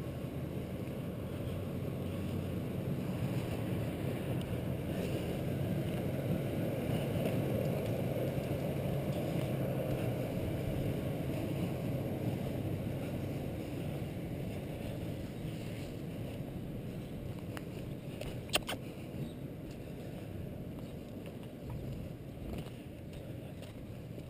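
Steady low rumbling outdoor noise on the camera's microphone that swells through the middle and fades toward the end, with one short sharp click near the end.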